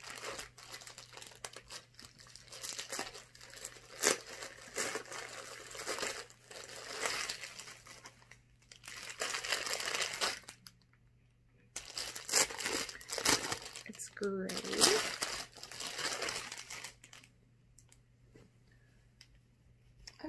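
Plastic mailer and a clear plastic packaging bag crinkling and rustling in bursts as a package is opened and a shirt is pulled out. The rustling stops about three seconds before the end.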